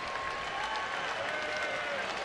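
Baseball stadium crowd applauding, a steady wash of clapping, with a few faint drawn-out tones above it.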